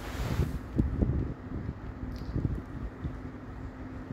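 Low rumbling and soft thumps of a phone microphone being handled or brushed, strongest about one second in and again briefly later, over a faint steady hum.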